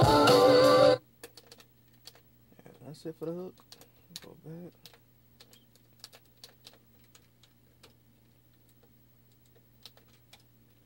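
Beat playback cuts off suddenly about a second in. After that come irregular clicks of the Akai MPC 1000's pads and buttons being pressed, over a low steady electrical hum.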